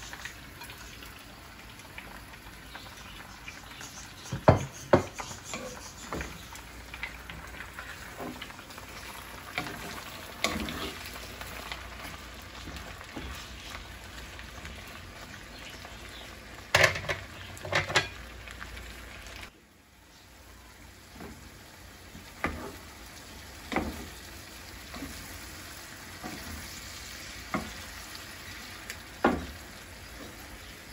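Raw shrimp frying in a cast-iron skillet: a steady sizzle, broken by sharp knocks and scrapes of a spatula against the pan as they are stirred.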